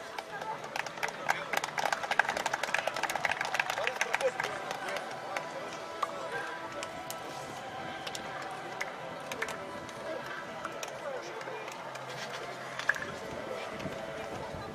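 Hand clapping, dense for the first few seconds and thinning out to a few single hand slaps, over background music and chatter.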